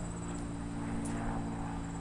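Outdoor background: a steady low hum with crickets chirping high and faint above it.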